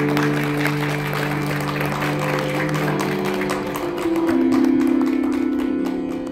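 Audience applause, with many hands clapping over a tanpura drone that keeps sounding underneath.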